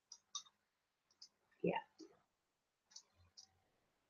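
Faint light clicks and taps, about six spread over the few seconds. About one and a half seconds in comes one short sound that falls in pitch and is the loudest moment.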